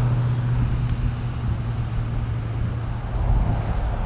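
Road traffic on a nearby highway: a steady low rumble with a constant low hum underneath.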